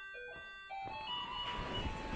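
Electronic chiming melody from a baby walker's musical toy tray, playing a simple tune of single notes. A low rumbling noise joins about three-quarters of a second in.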